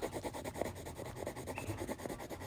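Wax crayon scribbling on paper in quick back-and-forth shading strokes, a steady rapid scratching.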